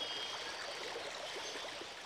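Rainforest creek running over rocks, a steady rush of flowing water.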